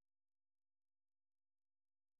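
Near silence: a dead audio feed with no audible sound.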